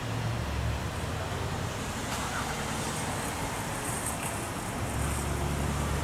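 Diesel freight locomotive running at low throttle as it creeps forward, a steady low engine rumble that eases in the middle and grows stronger again about five seconds in.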